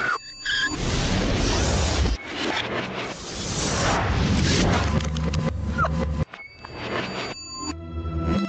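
Cartoon sound effects: a loud, noisy screeching rush that lasts about five seconds and cuts off suddenly about six seconds in, with music underneath.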